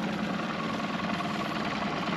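Boat's outboard motor running steadily at trolling speed, a constant hum.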